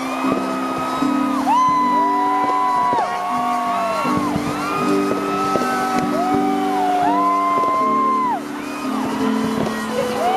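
Live music: slow sustained chords with long held sung notes over them, and whoops from the crowd.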